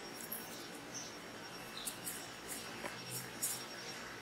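Faint, scattered small high-pitched ticks and scratches from a steel crochet hook and thread being worked through the stitches, over quiet room tone.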